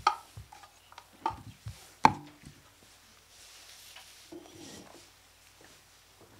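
Two sharp knocks, the loudest near the start and another about two seconds in, with a few fainter knocks and faint murmured voices between them.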